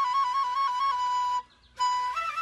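Chinese bamboo flute (dizi) playing a rapid trill between two neighbouring notes, which settles onto a held note. The sound breaks off briefly for a breath, and a new phrase begins near the end.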